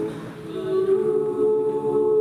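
Women's a cappella group singing in close harmony. The sound dips briefly just after the start, then a new chord swells in and is held.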